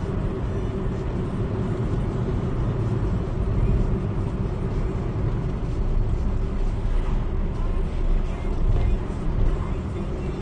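Steady road noise and engine hum inside a moving car, heard from the cabin: a low rumble of tyres on tarmac at around 35 mph.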